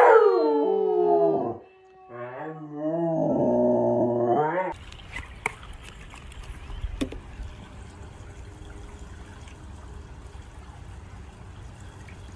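A husky-type dog howling: a loud, long howl that slides down in pitch, then after a short break a second, wavering howl that stops abruptly about four and a half seconds in. After that there is only a faint, steady, low background noise.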